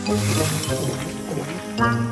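Cartoon background music with a liquid gulping sound effect as a bottle is drunk from, and a new musical chord comes in near the end.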